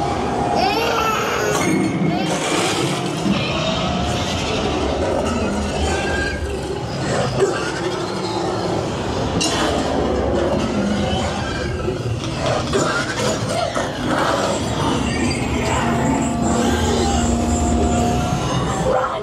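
Haunted-house maze soundtrack playing loudly: a dense, eerie mix of music and sound effects with a few sharp cracks.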